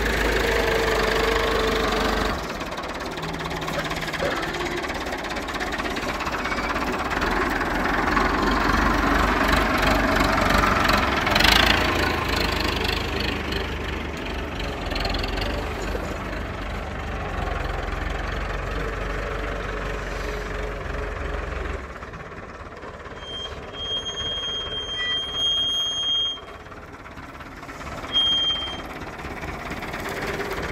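IMT 577 DV tractor's diesel engine running steadily under load while pulling a three-shank subsoiler through the ground. The sound drops noticeably in level about two-thirds of the way through.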